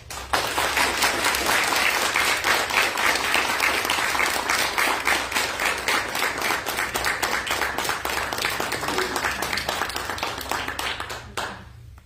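An audience applauding: dense clapping that starts suddenly and holds steady, then tapers off near the end.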